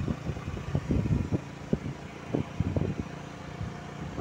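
Small motorcycle engine running steadily while riding along a road, a low hum broken by irregular low thumps of wind on the microphone.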